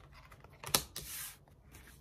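A deck of tarot cards being shuffled by hand: one sharp card click about three quarters of a second in, then a brief soft rustle of cards sliding against each other.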